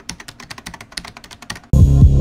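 Rapid keyboard typing clicks, a typing sound effect for text appearing on screen. Near the end, loud music with a deep, sustained tone cuts in suddenly and becomes the loudest sound.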